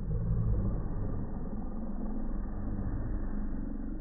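Slowed-down slow-motion sound: the room's voices and noise stretched and pitched far down into a deep, muffled rumble with no words left in it.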